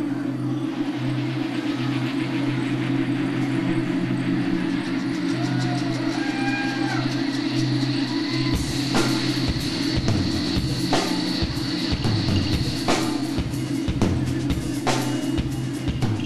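Live rock band opening a song: a sustained low drone of bass and keyboard with a few gliding notes, then drums come in about halfway through with a steady beat of hits and cymbals roughly once a second.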